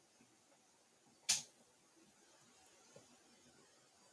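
Near silence broken by a single short, sharp click about a second in, with a much fainter tick near the end.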